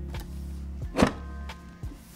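Low droning electronic music from the unboxing's animated video, with one sharp hit about a second in.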